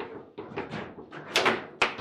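Foosball table in play: an irregular run of quick clacks and knocks from the ball, the plastic figures and the rods, with one sharp crack near the end.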